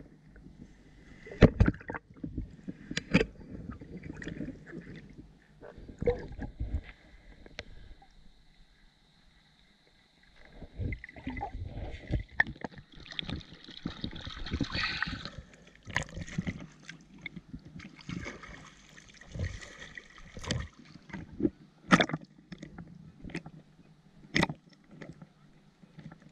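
Lake water sloshing and splashing around a camera held at and just below the surface, while a wading metal detectorist works a mesh sand scoop through the water. Sharp knocks and splashes come every few seconds, with a quieter stretch about eight to ten seconds in.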